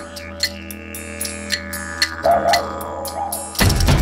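Trailer soundtrack music: a steady low drone under light, regular ticking percussion, with a brief wavering tone a little past two seconds in. About three and a half seconds in, the full music with drums comes in loudly.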